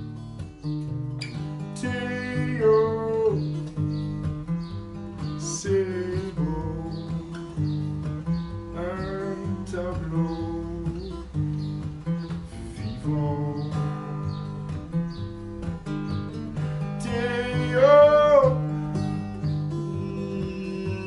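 A man singing to his own acoustic guitar accompaniment. The guitar plays throughout, and the voice comes in phrases with held, wavering notes, the loudest near the end.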